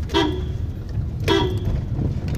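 Two short car-horn toots about a second apart, heard from inside a moving car over the steady low rumble of the engine and road.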